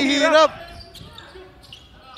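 Basketball bouncing on a hardwood court, faint knocks under the hum of a large gym.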